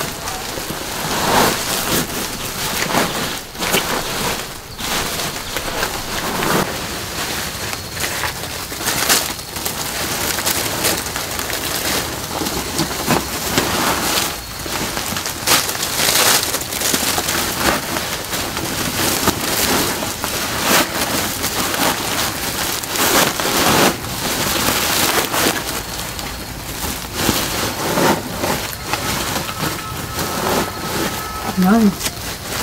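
Freshly picked tea leaves rustling and a woven plastic sack crinkling as armfuls of leaves are stuffed and pressed down into it, an uneven crackling and rustling that comes and goes.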